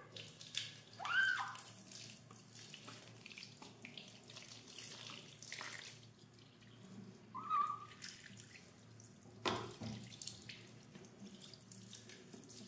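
Tap water running into a sink while a small kitten is washed under it, the kitten meowing twice in short arching calls, about a second in and again past seven seconds. A sharp knock or splash about nine and a half seconds in.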